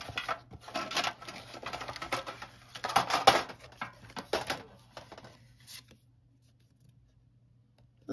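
Hands rummaging through a metal tin of trading cards: cards rustling and scraping against the tin with many small clicks, busiest about three seconds in and dying away after about five seconds.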